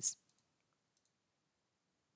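A few faint computer-mouse clicks, spaced out over about a second, as checkboxes are unticked in a settings dialog; between them it is almost silent.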